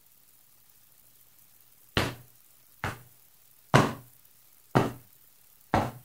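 About two seconds of near silence, then five short knocks, about one a second, each dying away quickly.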